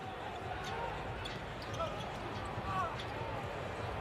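Basketball being dribbled on a hardwood court under the game's low court sound, with a few faint short squeaks.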